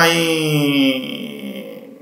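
A man's voice drawing out one long hesitation vowel, a held 'my...' or 'uh', its pitch sinking slowly as it fades out near the end.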